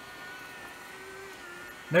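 Unbranded budget robot vacuum cleaner running across carpet, giving off a steady high-pitched motor whine.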